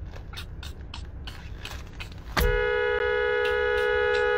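A car horn sounding one long, steady two-tone blast, starting a little over two seconds in and still going at the end. Before it there are only faint clicks over a low rumble.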